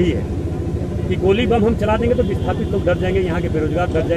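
A man speaking, with the pitch rising and falling as in continuous talk, over a steady low background rumble.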